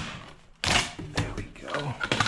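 A thin flexible strip being bent and scraped against an aluminium door threshold: a sharp knock, then a rustling scrape and a few light clicks.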